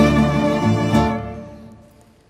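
Live orchestral music playing sustained notes, which die away over the second half.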